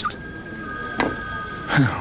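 A steady electronic tone, two pitches sounding together, held for about a second and a half with a short click in the middle.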